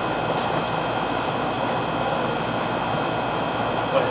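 A steady, even rushing noise with a single sharp click near the end.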